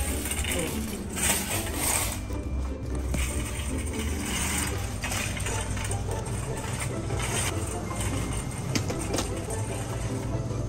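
Metal wire shopping cart rattling and clinking as it is pushed across a store floor, over a steady low hum.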